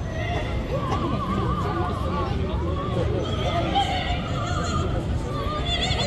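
A melody of long held notes, each with a quick, even vibrato, moving from one pitch to the next every second or so, over the low rumble of a crowd.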